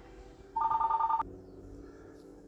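Electronic phone ring tone: two pitches warbling together for under a second, then cutting off suddenly.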